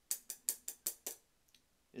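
A quick run of about six sharp clicks in the first second, then one faint click: metal tweezers snapping shut.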